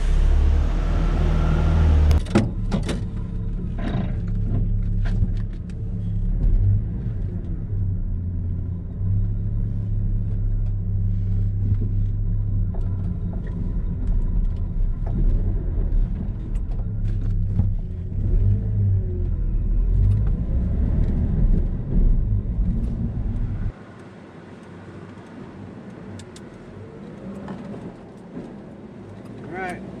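A 1988 Jeep Comanche's 4.0 L inline-six engine running on a test drive, heard from inside the cab, its note rising and falling with speed. The engine is now fed by a newly fitted Bosch 69302 fuel pump. About three quarters of the way through, the level drops suddenly to a quieter, steady road rumble.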